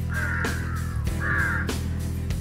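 A bird calling twice, each call about half a second long, over background music with a steady beat.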